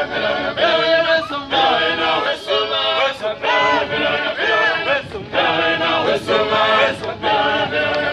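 A group of voices singing together without instruments: a chant of short phrases repeated over and over.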